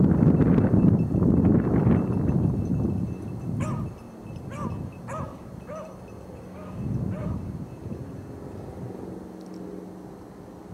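A hound trailing a rabbit gives about six short, faint barks in quick succession a few seconds in. Before them, a loud rumble of wind on the microphone dies away.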